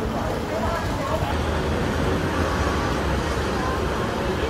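Busy city street ambience: a steady low traffic rumble with passers-by talking in the background.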